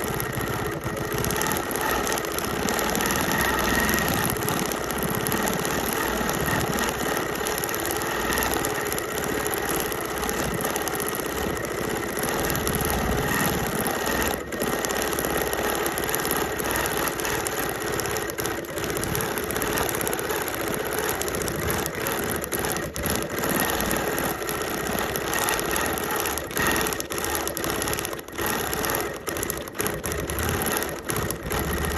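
Sewing machine free-motion quilting through the thick layers of a fused-appliqué quilt, the needle running steadily, with a few brief pauses about halfway through and near the end.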